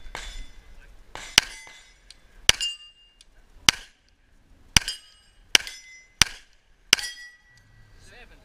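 Seven handgun shots fired at steel plate targets, each followed by the high metallic ring of a struck plate. They come roughly a second apart, quickening toward the end.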